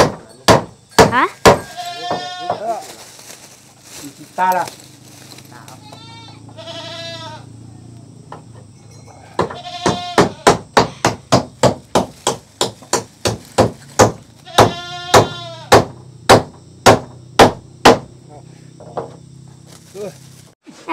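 Hammer driving nails through corrugated roofing sheets onto wooden rafters: sharp strikes, a quick run at the start and a steady run of about two a second through the second half. Several wavering high calls sound in between.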